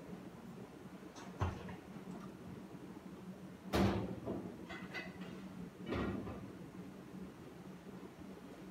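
A few knocks and clatters of a wire-mesh skimmer against a stainless steel pot, the loudest a little under four seconds in, with a steady low hum underneath.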